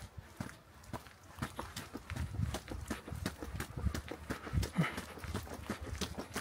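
Footsteps of a person climbing concrete outdoor steps: a steady run of short, sharp treads.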